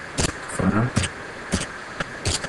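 Computer keyboard keystrokes: a few separate clicks, spaced about half a second apart, as a short console command is typed. A brief murmur of voice comes under the clicks partway through.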